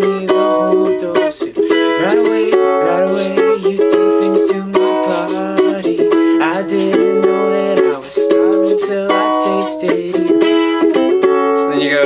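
Ukulele strummed in a steady rhythm through the song's four chords, E, F sharp minor, C sharp minor and B, with a man's voice singing the melody over it.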